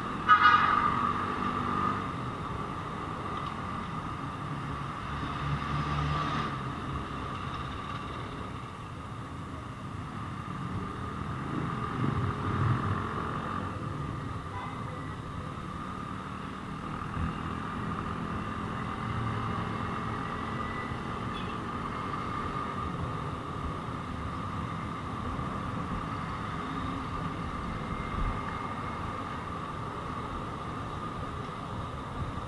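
Street traffic heard from a moving vehicle, with a car horn honking briefly right at the start, the loudest moment, and a fainter toot about six seconds in. A steady high hum runs underneath.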